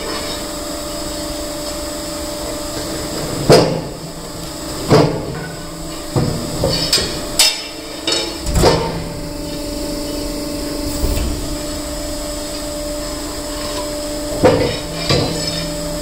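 Steinex hydraulic stone splitter running with a steady hum while granite blocks are shifted on its steel table, giving loud stone-on-steel knocks. The loudest knock comes about three and a half seconds in, a cluster follows between five and nine seconds, and two more come near the end.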